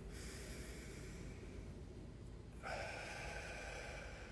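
A man's slow, deep breath drawn through the nose, a soft breathy hiss that starts about two and a half seconds in and is held, as one counted breath of a paced breathing exercise.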